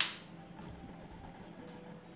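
A single sharp slate clap marking the start of the take, dying away within a fraction of a second. A faint steady hum follows.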